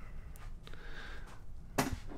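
Quiet handling of a DeWalt 18 V cordless drill held in the hand, with one sharp click near the end.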